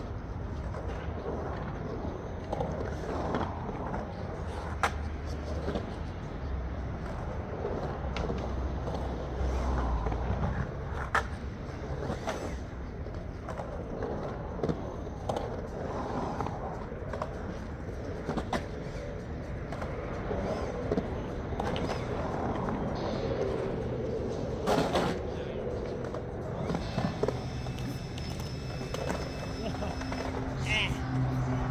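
Skateboard rolling around a concrete bowl: a steady rumble of the wheels on the concrete, broken a few times by sharp clacks of the board.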